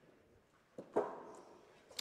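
A steel pétanque boule, thrown as a shot, landing on the gravel terrain with a short dull impact about three-quarters of a second in, a missed shot. A sharp short knock follows near the end.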